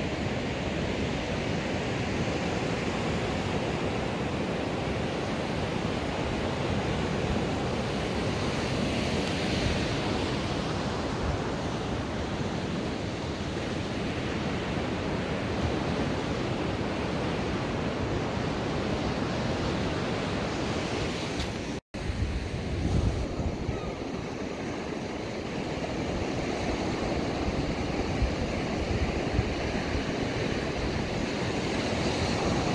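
Ocean surf breaking and washing up the beach, with wind buffeting the microphone. The sound cuts out for an instant about two-thirds of the way through, and heavier low wind rumble on the microphone follows for a couple of seconds.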